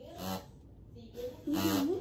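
A child laughing in two short bursts, a brief one just after the start and a louder one near the end.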